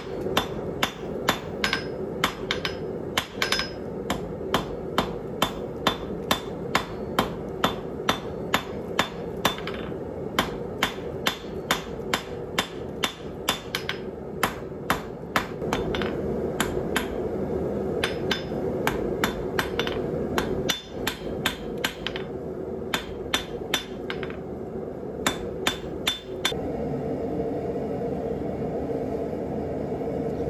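Hand hammer striking a red-hot 3/8-inch 1095 steel rod on an anvil. The blows come in steady runs of about two to three a second, with short pauses between runs and fewer blows near the end, over a steady low hum.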